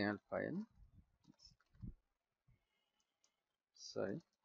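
A voice speaking briefly in the first half second and again just before the end, with a few faint clicks in the quiet stretch between.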